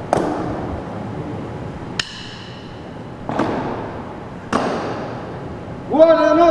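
Four sharp knocks, one to two seconds apart, each with a ringing tail that echoes round a stone-floored hall. The second has a bright metallic ring.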